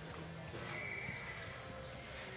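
Horse loping on soft arena dirt, its hoofbeats thudding faintly over a steady hall hum, with a high held tone from about half a second in that lasts nearly a second.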